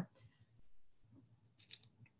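Near silence, broken about three-quarters of the way through by a quick cluster of faint, high-pitched clicks.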